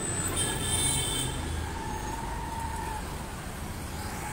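Road traffic passing: engines of auto-rickshaws, a small truck and motorbikes going by.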